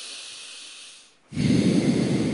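Anulom vilom (alternate-nostril breathing) into a handheld microphone: a long, thin hiss of breath through one nostril, then from just past a second in a louder, deeper rush of breath.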